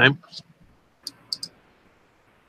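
Three quick computer mouse clicks about a second in, just after the end of a spoken word.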